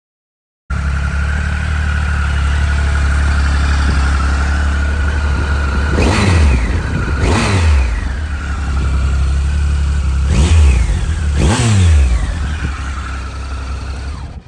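The 2017 Triumph Tiger Explorer XRT's 1215 cc inline three-cylinder engine idles steadily. It is blipped four times in two pairs, each rev rising quickly and falling back to idle.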